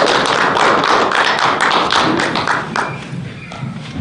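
Audience applauding, the clapping thinning out about three seconds in.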